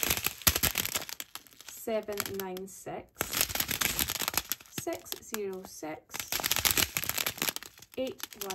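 Thin clear plastic bags of diamond-painting drills crinkling as they are handled and flipped along a strip, a dense crackle that is loudest near the start.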